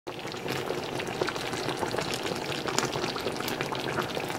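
Thick sweet and sour sauce simmering in a pan around fish slices, bubbling steadily with many small pops.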